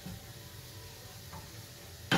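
Grated vegetables frying faintly in a pan in chicken juices, a steady soft sizzle as they are stirred with a wooden spoon.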